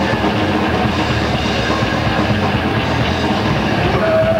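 Loud thrash metal jamming at a soundcheck, dominated by fast, dense drumming on a drum kit heard from close beside it.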